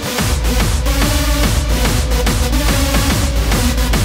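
Hardstyle dance track: a distorted kick drum on every beat, about two and a half a second, each kick falling in pitch, under a steady synth line. The beat drops out for a moment right at the start, then comes straight back.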